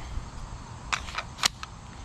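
Four short, sharp mechanical clicks in quick succession, about a second in, from an emptied Byrna SD launcher being handled; the third click is the loudest.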